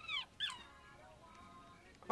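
A puppy whimpering twice in quick succession, each a thin high call that falls in pitch, over soft film music.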